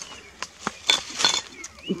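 A handful of short, sharp crunches and snaps, as of steps over broken concrete rubble and dry twigs.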